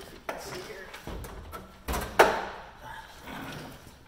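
Handling noises as a circuit card is pulled from its slot in a traffic signal cabinet: scattered clicks and rustling of paper, with one sharp clack a little over two seconds in.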